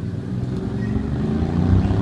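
A motor vehicle's engine rumbling low and steadily, growing louder as it approaches.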